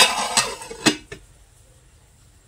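A metal lid set down onto a metal cooking pot: a sharp clang, a short scraping rattle as it settles, then two lighter clinks about a second in.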